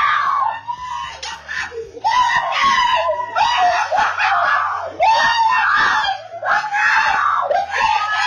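A family of adults and children screaming and shouting with joy, celebrating their football team's last-second score. The high-pitched screams go on almost without a break and get louder about two seconds in.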